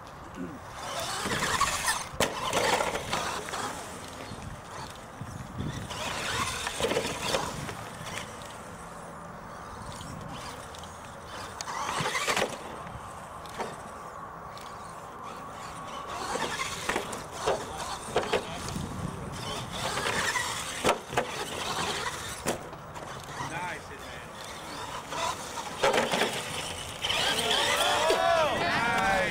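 Radio-controlled monster trucks driving over turf and wooden ramps: motors whining up and down, with scattered sharp knocks from jumps, landings and crashes.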